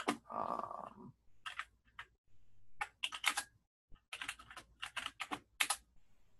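Computer keyboard typing, in several short bursts of keystrokes.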